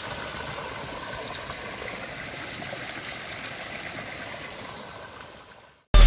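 A jet of spring water from a pipe splashing into a fish pond: a steady rushing splash that fades out shortly before the end.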